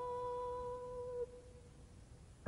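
A contralto voice holding one steady note, with no vibrato, that stops abruptly about a second and a quarter in, leaving only faint recording hiss.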